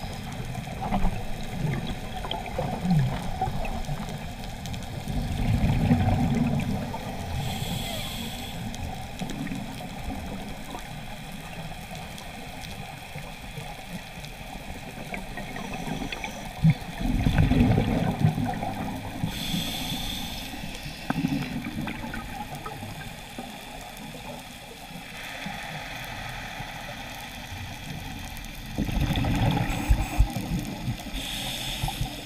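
Scuba regulator breathing heard underwater: a slow cycle of exhaled bubbles gurgling out in low rumbling surges, about every twelve seconds, each followed by a short hissing inhale, over a steady underwater hiss.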